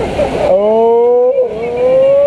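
A person's voice in two long, loud shouts, each held for about a second and rising slightly in pitch, the first starting about half a second in.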